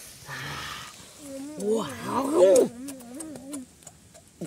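Wordless human voices: drawn-out, wavering vocal cries with no words, loudest a little past two seconds in, after a short rustle near the start.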